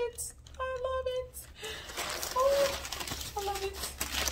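Crumpled paper stuffing rustling as it is pulled out of a handbag, the noise starting about a second and a half in. Before and over it, a woman hums a few held notes.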